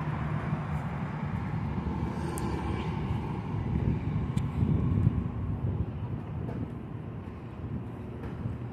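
City street traffic: passing cars' engines and tyres making a steady low rumble that grows louder to a peak about five seconds in, then fades.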